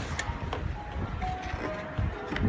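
Cardboard gift box being opened and handled, with a couple of light clicks in the first half-second, over faint background music whose notes step slowly downward and a low rumble.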